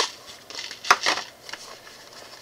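Clear plastic bowls being set down and stacked on a wooden table: a sharp plastic clack about a second in and a few lighter knocks.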